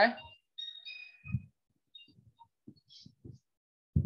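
Chalk on a blackboard as figures are written: faint, scattered taps and a few brief squeaks. A dull thump comes near the end.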